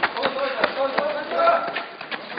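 Men shouting, with a string of irregular sharp knocks and cracks around them.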